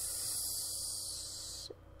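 A soft, steady high-pitched hiss that stops near the end, over a faint low hum.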